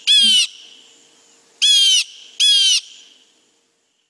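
Blue jay giving its harsh "jay" call three times, each call under half a second, from a played recording.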